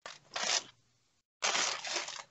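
Rustling and crinkling of a clear plastic sleeve holding a cross-stitch chart as it is handled, in two short bursts.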